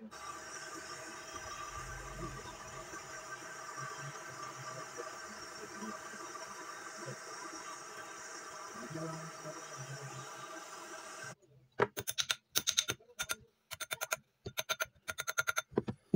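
Gas torch flame burning with a steady hiss as a silver ring is heated for soldering; it cuts off suddenly about two-thirds of the way through. Then comes a quick run of sharp metallic taps as the ring is hammered on a steel ring mandrel.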